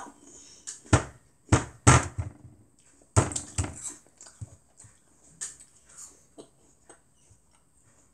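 A child chewing a mouthful of raw apple close to the microphone: loud crunches in two clusters in the first four seconds, then softer chewing clicks that thin out and stop near the end.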